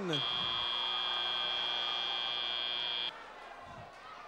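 FRC field's end-of-match buzzer marking the match timer running out: one steady, high-pitched electronic tone that lasts about three seconds and then cuts off, leaving the murmur of the gym crowd.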